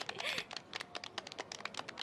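A rapid, irregular run of light clicks and crackles.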